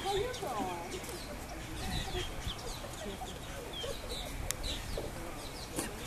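Wild birds calling: a few curving, chicken-like calls in the first second, and short high chirps scattered throughout.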